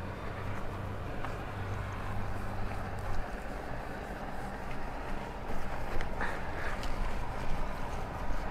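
A wet microfiber wash mitt scrubbing a car's alloy wheel between the spokes, making a steady rubbing and swishing with a few light ticks, over outdoor background noise. A low hum underneath stops about three seconds in.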